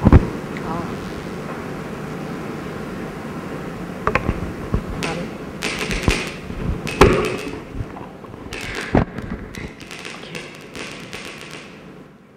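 Scattered knocks and bumps with stretches of rustling, over a steady room hum and faint indistinct voices.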